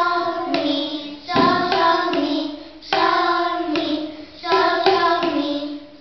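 Young children singing a short tune together in four phrases of about a second and a half each, with tuned plastic percussion tubes (Boomwhackers) struck in time, sharp strikes marking the notes.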